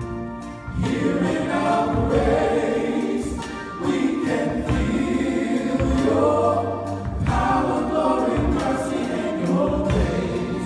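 Male gospel vocal group of five singing in harmony into handheld microphones.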